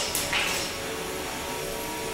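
Two 3 lb combat robots' spinning weapons, an undercutter and a drum, clashing: one sharp hit at the very start and a short scraping rush, then a steady whine of the spinning weapons.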